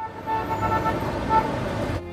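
City street traffic: a steady rush of traffic with several short car-horn toots.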